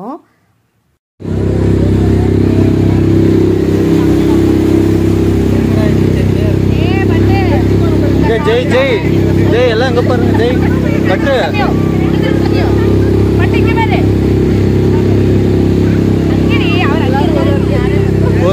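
Motorboat engine running at a steady pace, a loud low drone that cuts in suddenly about a second in. From about six seconds in, excited voices of passengers and children rise over it.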